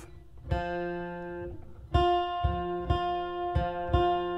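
Acoustic guitar picking single notes one at a time, about six plucks, each left ringing. These are octave notes being shown on the fretboard: the same note played on two strings a couple of frets apart.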